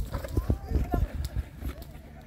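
Children's voices chattering and calling outdoors, over a run of low, irregular thuds several times a second.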